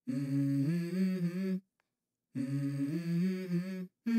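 A hummed, closed-mouth vocal hook in a song, in two held phrases of about a second and a half each, stepping between a few low notes, broken off by sudden gaps of silence.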